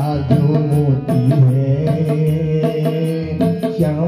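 Bina harmonium playing a bhajan melody over steady held low notes, with tabla strokes keeping the rhythm.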